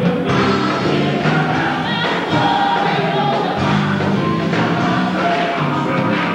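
Gospel choir singing, with a male soloist singing into a handheld microphone.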